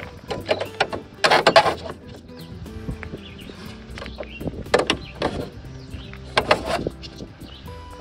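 Hard plastic clicks and knocks as green nylon ICF ties are pushed into the foam panels' corner brackets, coming in short clusters with the busiest one about a second and a half in. Faint background music runs underneath.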